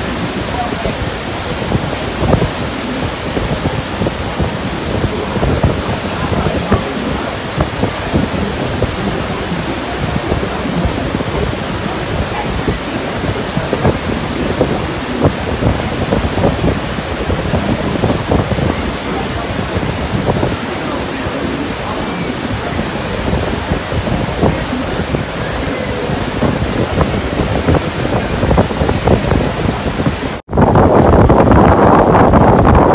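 Steady rushing roar of the American Falls and Bridal Veil Falls and the churning river below them, with wind gusting on the microphone throughout.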